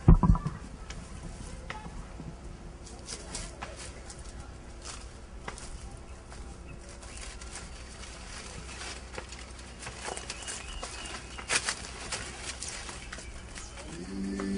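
Leaves and branches rustling and twigs crackling as people push through dense bush, with scattered small snaps throughout. A heavy thump comes right at the start, and two louder cracks come late on.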